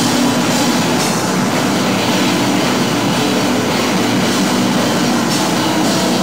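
Live experimental noise-rock band playing loud: a dense, unbroken wall of distorted noise with a steady low drone.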